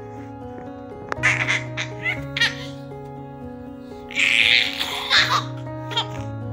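Baby giggling in short bursts over steady background music, with a longer burst of laughter about four seconds in.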